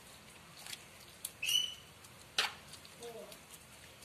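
Low room tone broken by a short, high-pitched chirp about one and a half seconds in and a single sharp knock about a second later.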